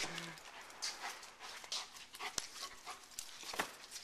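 A dog sniffing in short quick bursts while searching among boxes and bags, with a brief whine at the very start. There are two sharp knocks, about two and a half and three and a half seconds in.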